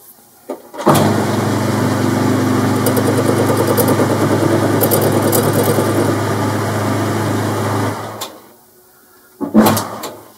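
A Boxford lathe is switched on and runs steadily for about seven seconds, with a low motor hum under a scratchy hiss from a wire brush held against the spinning phosphor bronze nut. It is then switched off and winds down. A short, loud clatter follows near the end.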